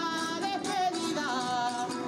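Live Spanish folk music: a sung melody over strummed and plucked guitars, played for a regional dance.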